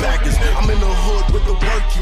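Hip-hop music: a rapped verse over a beat with heavy, steady bass.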